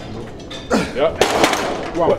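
Men's voices straining and shouting during a max-effort lat pulldown rep on the full weight stack. A short vocal effort comes about three quarters of a second in, followed by a loud breathy shout.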